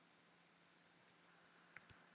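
Near silence: faint room tone, with two small clicks near the end.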